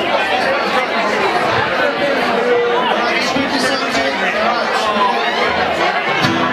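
Crowd chatter, many voices talking over one another, with no guitar playing.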